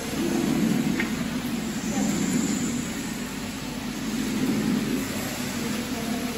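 Steady low rushing background noise of an indoor hall, with faint voices of people nearby.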